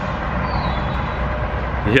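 Steady low rumble of idling vehicle engines and traffic at a busy fuel station, with a faint high whine sliding down in pitch about half a second in.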